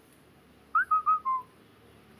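A short whistled phrase of four quick, clear notes, a bit under a second in. The first note slides up, the middle two are level and the last is lower.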